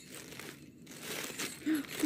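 Red tissue paper rustling and crinkling in the hands as it is pulled apart to unwrap a small gift, with a brief lull just before the one-second mark.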